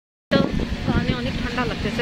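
Rumbling vehicle and road noise heard from aboard an open passenger vehicle moving through streets, with voices talking over it. The sound cuts out completely for a moment at the very start.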